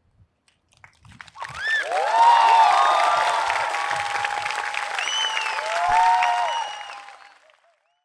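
Audience applauding, with several whooping cheers on top; it starts about a second and a half in, swells, and fades out near the end.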